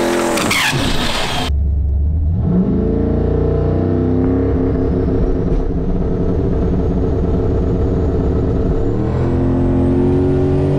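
Turbocharged LS V8 in a drag-race Camaro: the end of a burnout, engine and spinning tyres loud outside, revs falling away; then, heard from inside the cabin, the engine blips up briefly and settles into steady low running as the car rolls up to stage.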